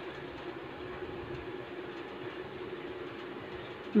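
A steady mechanical drone with a faint low hum, holding an even level throughout.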